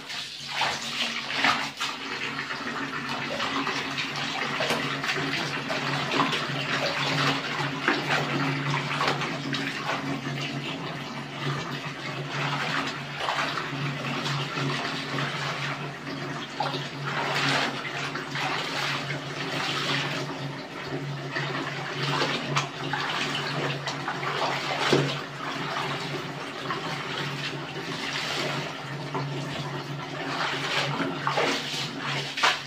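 Hands scrubbing and sloshing clothes in a plastic basin of soapy water, with irregular splashes, over a steady low hum.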